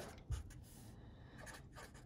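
Faint strokes of a black Sharpie felt-tip marker writing on a sheet of paper, with one soft knock about a third of a second in.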